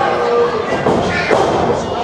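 A thud on the wrestling ring's canvas as a wrestler lands on it, about a second and a quarter in, with crowd voices around it.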